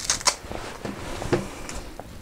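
Dry, papery onion skin being peeled off by hand, crackling and rustling in short bursts, the loudest right at the start.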